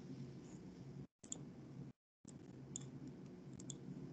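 A few faint, sharp computer clicks over a low steady hum. The background cuts out abruptly twice, briefly.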